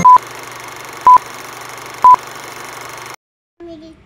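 Three short, loud electronic beeps at one steady pitch, one a second, over a steady hiss that cuts off suddenly about three seconds in.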